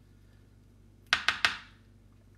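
A spoon tapped three times in quick succession, about a second in, knocking scooped-out artichoke choke off onto a plastic cutting board; sharp clicks with a short ring.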